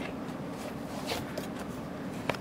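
Rustling and scraping from a handheld camera being moved, over a steady low hum; a brief scrape about a second in.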